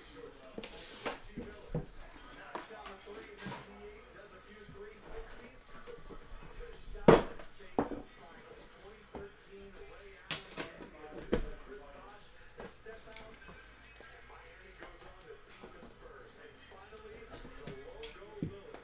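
Trading-card box being unpacked by hand: cardboard sliding and rubbing, with scattered clicks and knocks as the boxes are set down, the sharpest about seven seconds in and a few more around ten to eleven seconds. Faint background music runs underneath.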